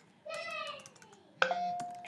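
Computer keyboard keys clicking as a web address is typed. Behind the clicks there is a drawn-out voiced sound falling in pitch, and near the end a steady tone that starts suddenly.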